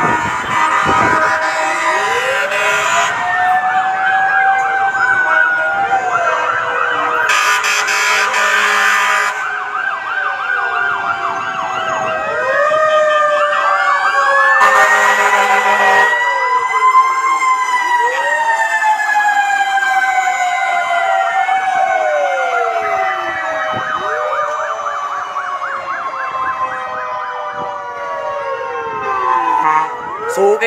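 Several fire-truck sirens wailing at once, their pitches rising and falling out of step with each other. Three short, loud blasts cut in, about 2, 8 and 15 seconds in.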